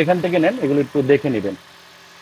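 A man talking, with a faint low steady hum underneath as he stops near the end.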